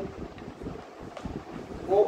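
A sheaf of printed paper sheets being picked up and handled, with a few faint rustles over a steady low room rumble.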